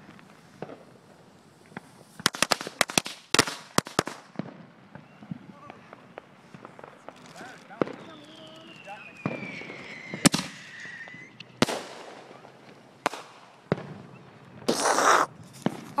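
Fireworks and firecrackers going off: a rapid string of sharp cracks about two to four seconds in, then scattered single bangs. A whistle falls in pitch from about eight to eleven seconds in, and a loud hissing burst comes near the end.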